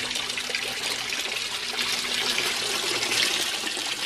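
Steady stream of water pouring from a PVC grow-bed drain pipe into a fish tank's water. The grow bed is draining over its standpipe while its bell siphon has not yet fully engaged.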